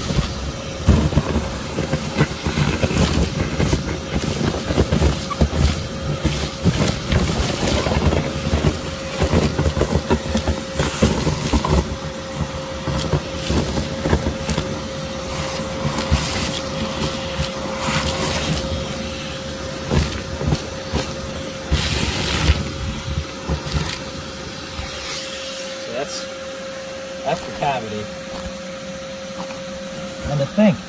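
Vacuum running with a steady whine, its hose nozzle sucking up yellow jackets, comb debris and pebbles from an underground nest cavity, with many small clicks and rattles of material going up the hose. The suction noise eases in the last few seconds while the steady whine continues.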